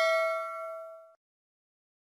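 A metallic, bell-like ding rings out with several clear tones, fading, then cuts off suddenly just over a second in.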